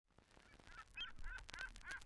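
Birds calling faintly, a quick series of short calls about three a second that fades in from silence.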